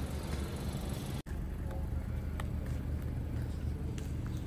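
A car engine running steadily with a low rumble; the sound drops out abruptly for an instant just over a second in.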